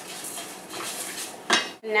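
Wooden spoon stirring toasting rice in a stainless steel pot, the dry grains scraping and rattling against the metal, with one sharp knock about one and a half seconds in.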